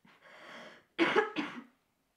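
A sick woman coughing into the sleeve of her fleece dressing gown: a faint breathy sound, then one loud cough about a second in.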